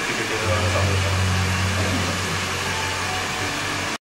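Steady hiss with a low hum underneath that grows stronger about half a second in: continuous room or machine noise.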